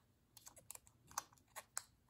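Faint, irregular light clicks and ticks of a thin steel piston ring being worked by hand over plastic guide strips onto a Honda CL350 piston, the sharpest about a second in and again near the end.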